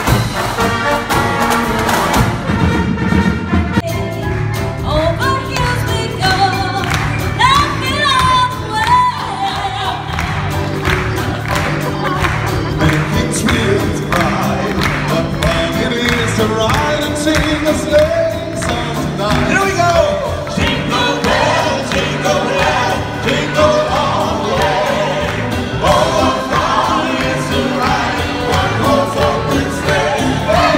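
Live stage music: a brass fanfare band playing for about the first two seconds, then several singers performing a song together over a band with a steady beat.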